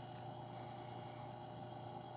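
Quiet room tone: a faint, steady hum over a low hiss, with no distinct events.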